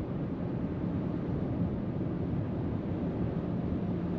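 Steady road and wind noise inside the cabin of a Hyundai Tucson plug-in hybrid cruising on the highway at about 60 mph, a constant low rumble with no change.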